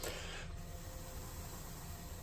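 A person blowing a soft, steady hiss of breath onto a freshly glued foam joint treated with CA kicker, to speed the glue's curing. The blow is a little stronger in the first half second.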